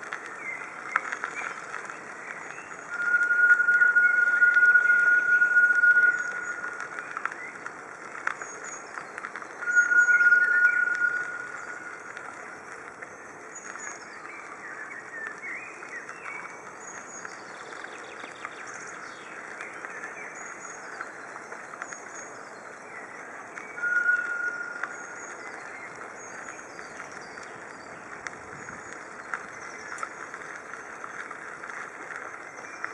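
Small birds chirping and singing throughout. A steady high-pitched squeal cuts in loudly three times: a long one of about three seconds near the start, a shorter one about ten seconds in, and a brief one about twenty-four seconds in.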